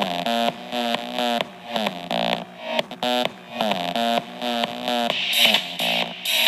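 Electronic dance music with a pulsing, repeating synth riff, played through a Wowee One gel audio speaker, with very little deep bass.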